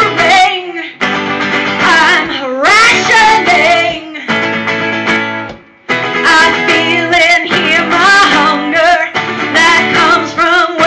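A woman singing with her own strummed acoustic guitar. She holds long sliding notes, with brief pauses between phrases about one second and just before six seconds in.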